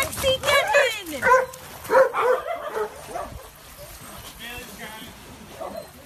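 A dog whining and yipping in a quick run of high cries that bend in pitch, loudest over the first two seconds or so and then trailing off to fainter cries.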